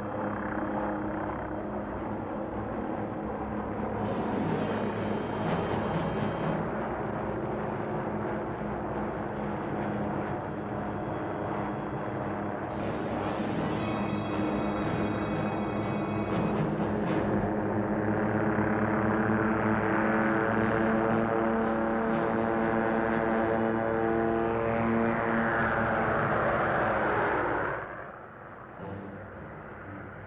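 Orchestral film score with timpani and brass, mixed with the engine whine and rotor noise of two low-hovering helicopters. The sound swells and rises in pitch, then cuts off suddenly near the end, leaving a quieter rumble.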